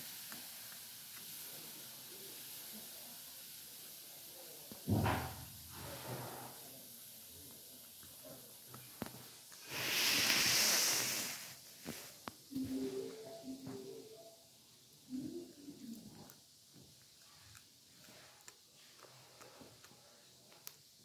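A kitten chewing and gnawing on a piece of chicken, heard as small scattered clicks. A sharp thump comes about five seconds in, and a loud hissing rush lasts about a second and a half around the middle.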